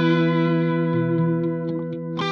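Electric guitar (LTD SN-1000W) played through a Blackstar ID:Core Stereo 150 combo amp: held notes ringing out and slowly fading, with a few faint string ticks near the end.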